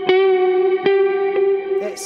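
Electric guitar playing single notes of a riff through a load of reverb: one sustained note is picked at the start and again a little under a second in, and each pick rings on.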